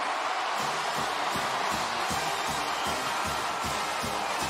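Stadium crowd cheering a touchdown while a marching band plays, the band's low brass notes coming in about half a second in.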